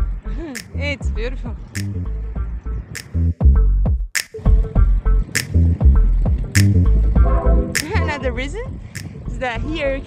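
Background electronic music with a steady drum-machine beat and deep bass, a sharp clap-like hit about every second and a bit, and a bending melodic line over it.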